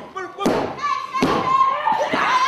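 Two thuds of bodies hitting the wrestling ring mat, about half a second and just over a second in, over loud shouting voices.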